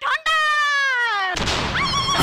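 One long, high drawn-out vocal call sliding down in pitch for about a second, then dance music with a heavy beat cuts in.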